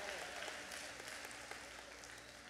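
Faint applause from a congregation, dying away.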